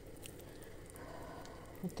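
Faint sounds of a knife slicing and hands handling raw pork fat on a wooden cutting board, with a few light clicks early and a soft scraping from about a second in.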